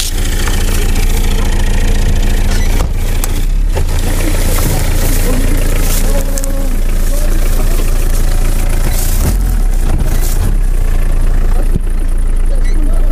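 A motor running steadily at a constant low pitch, with a few knocks and rustling over it.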